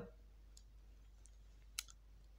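Near silence with two faint clicks and one sharper, short click near the end.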